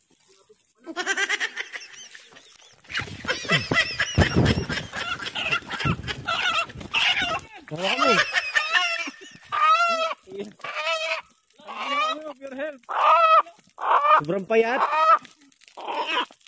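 A rooster squawking over and over in alarm as it is chased down and grabbed by hand. The calls come in short, loud, repeated bursts, about one a second towards the end.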